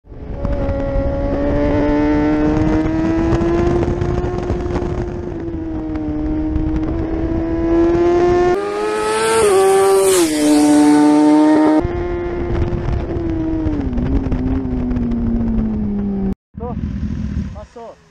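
Kawasaki ZX-10R inline-four sportbike engine running loud at high revs, with a steady, slightly rising pitch. About nine seconds in it rushes past with a lot of wind hiss, its pitch jumping up and then dropping sharply. Afterwards the revs fall slowly until the sound cuts off suddenly near the end.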